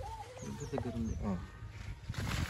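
Faint, distant voices over a low rumble, with a few short high chirps.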